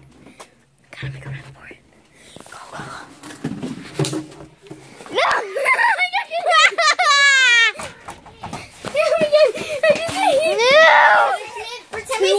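Children's voices making non-word cries: a long, high, wavering cry about five seconds in, then more rising and falling cries near the end, after a few seconds of quiet rustling and taps.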